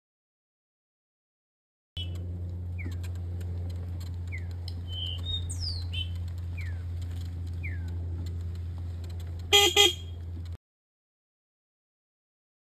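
Birds chirping with short, falling calls over a steady low hum. Near the end come two quick vehicle-horn honks, the loudest sound, and then the sound cuts off.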